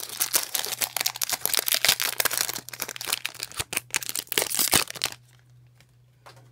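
Foil Pokémon booster pack wrapper crinkling as it is handled and torn open by hand, with many sharp crackles; it stops abruptly about five seconds in.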